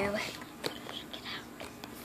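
A girl whispering softly, with a few short clicks.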